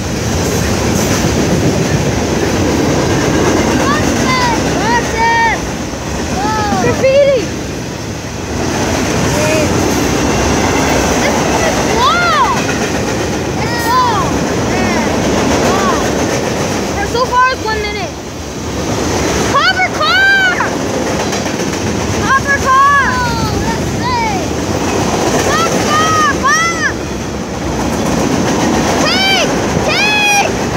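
Long CSX freight train passing close by: a steady rumble of wheels on rail with clickety-clack over the joints. Many short squeals rise and fall in pitch throughout.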